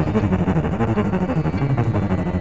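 Ten-string double violin playing a rapid run of notes in its low, cello-like register, in a Carnatic raga.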